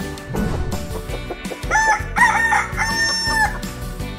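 A rooster crows once, a long cock-a-doodle-doo starting a little under two seconds in, over light music.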